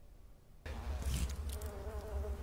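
Swarm of flies buzzing, a steady wavering drone with a low hum underneath. It starts suddenly a little over half a second in, out of near silence.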